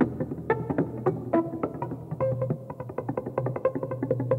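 Live jazz: a run of quick plucked notes on an electric upright bass, ringing over a held low tone.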